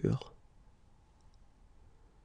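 The end of a man's voice saying the French word "aventure", then faint room tone with a couple of faint, tiny clicks about a second in.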